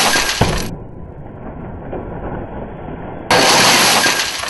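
Tempered safety glass shower panel struck with a hammer and shattering: a loud burst of breaking glass with a sharp hammer knock in it, a rush of crumbling pieces falling, then a second loud burst of shattering glass near the end.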